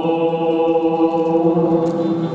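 Voices singing a traditional Greek Christmas carol (kalanta) in a chant-like style, with violin and clarinet accompaniment, on long held notes.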